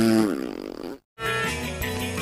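A cartoon horn blast: a long horn's low, buzzy note that sags and falls in pitch, dying out in the first half second. After a brief silence about a second in, music starts.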